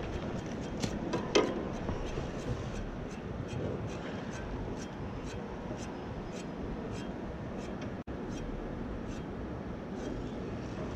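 Air-conditioner condenser fan running steadily with a faint, regular ticking about twice a second, which the technician takes to sound like a piece of paper or a stick caught in the fan.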